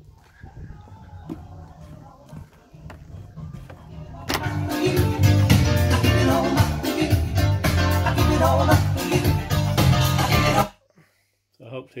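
Music from a hi-fi's bookshelf speakers at full volume, heard faint and bass-heavy through the soundproofed walls of the garden office for about four seconds, then suddenly loud and clear once inside. It cuts off abruptly near the end as the hi-fi is switched off.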